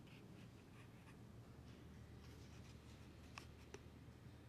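Near silence: room tone with a steady low hum, a few faint ticks and rustles, and two small sharp clicks near the end.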